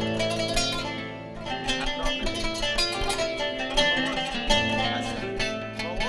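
Qanun played with metal finger picks: a run of quick plucked notes ringing over lower held notes.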